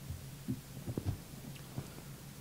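Steady low room hum with a few soft, short low thumps.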